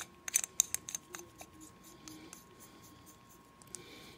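Brass end cap of a tube mod being screwed onto its threads over the battery, giving a quick run of small metallic clicks in the first second or so, then faint handling.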